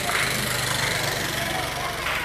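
Small motorcycle engine running, with a low, even pulsing, over a murmur of voices.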